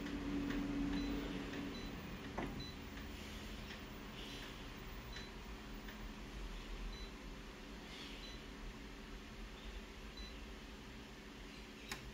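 Office copier humming steadily and quietly while its touch panel is operated, with a low steady tone for the first couple of seconds, a single click about two and a half seconds in, and a few faint short beeps.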